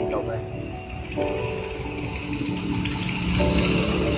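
Small HP LaserJet laser printer running as it feeds printed test pages out of its output slot, with music and a singing voice playing over it.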